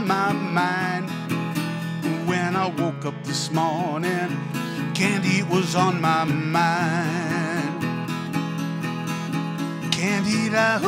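Dobro resonator guitar playing an instrumental blues break, its notes wavering and sliding in pitch over a steady low bass note.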